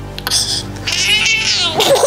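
A baby crying, with a high, wavering wail about a second in.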